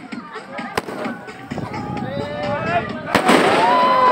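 Aerial fireworks: a sharp crack about a second in, then a louder bang near the end with a brief crackle as the shell bursts into sparks, over excited voices.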